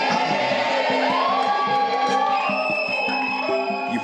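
Background music with a group of voices cheering a drawn-out "yay" over it, the voices fading out near the end.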